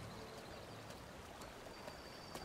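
Faint, steady wash of flowing water, with a few light ticks.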